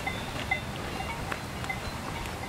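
Cowbells ringing irregularly: scattered single bell notes at several different pitches over a steady rushing background.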